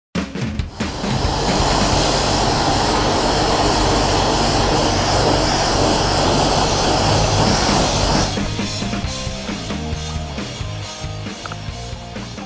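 High-pressure wash lance spraying water onto a motorcycle, a loud steady hiss that cuts off suddenly about eight seconds in. Background music with a steady beat runs underneath.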